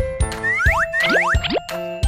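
Bouncy children's background music with a steady beat, overlaid with cartoon boing and slide-whistle sound effects: several quick pitch glides, falling about half a second in and rising past the middle.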